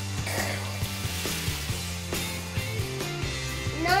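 Background music with a low bass line moving in steady steps. A child coughs and starts speaking near the end.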